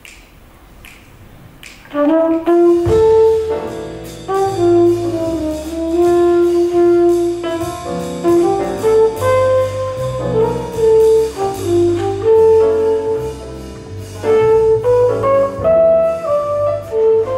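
Live jazz combo: a flugelhorn plays a melody over piano, low bass notes and drums. The band comes in about two seconds in, after a few soft ticks.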